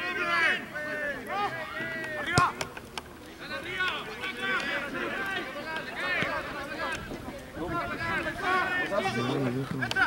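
Several voices shouting and calling over one another across a rugby pitch, with one sharp knock about two and a half seconds in.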